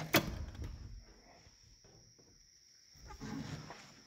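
A sharp knock, then rustling and shuffling as someone climbs the steps into a tractor cab past the open door; a softer shuffle comes about three seconds in.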